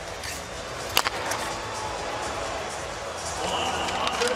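Arena crowd noise throughout, with one sharp crack about a second in from a hard hockey slap shot.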